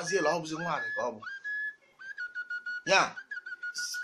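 A steady, high whistle-like tone held as one note, then after a short break a slightly lower note held to the end, with speech over its start.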